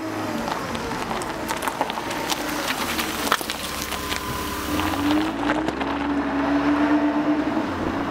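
A motor vehicle running: steady engine and road noise with many small clicks, and a low tone that rises a little past the middle.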